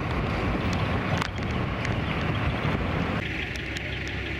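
Rumble of a classic American car driving over a bumpy road, with wind rushing over the microphone and the engine low underneath; a sharp knock about a second in, and the sound changes abruptly near the end.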